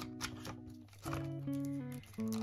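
Background music of held, stepping synth chords, with a light crinkle of plastic binder pockets as pages are turned.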